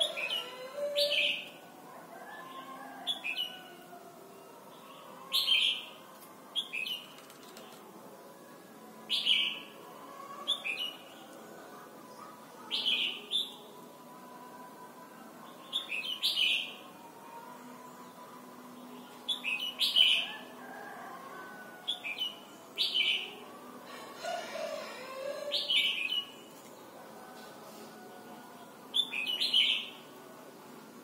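A caged red-whiskered bulbul flitting between perches, giving short bursts of wing flutter and brief chirps every one to two seconds, often in quick pairs.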